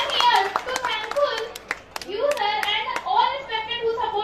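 A girl speaking steadily into a microphone, with scattered sharp hand claps from the audience cutting in throughout.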